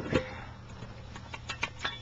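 A few light knocks and clicks from a plastic bucket and its lid being handled, with one louder knock just after the start and faint ticks near the end.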